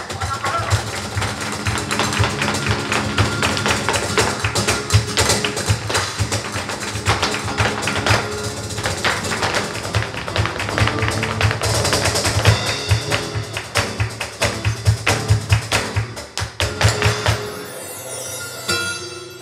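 Flamenco music with rapid zapateado footwork: fast, dense heel-and-toe strikes on the stage floor over flamenco guitar and percussion.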